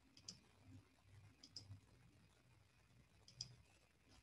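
Near silence: room tone with a few faint, sharp clicks spaced irregularly, some in quick pairs.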